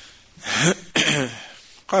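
A man clearing his throat twice in quick succession, about half a second and one second in, before he speaks again.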